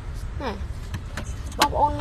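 Plastic car glove box latch clicking as the lid is released and swings open, with a sharp click about one and a half seconds in after a couple of fainter ones, over a low steady hum.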